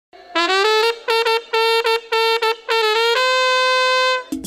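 Solo trumpet playing a run of short separated notes, several of them sliding up into pitch, then holding one long steady high note near the end.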